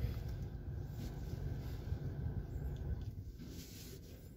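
Faint low rumble of the Mazda CX-5's idling engine heard inside the cabin, fading away toward the end as the engine is switched off.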